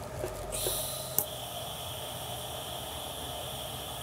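TIG welding arc on stainless steel tubing, DC negative with high-frequency start: a steady high hiss with a faint thin whine that starts about half a second in, with one short click a little later.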